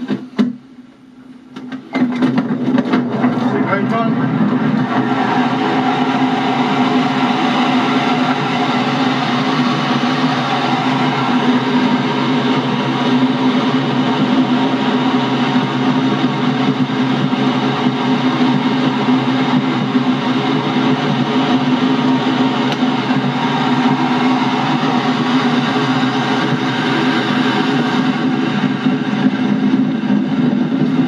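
Glider winch launch: a loud, steady rush of airflow over the cockpit canopy that starts suddenly about two seconds in, as the cable pulls the glider into the air, and holds steady through the climb.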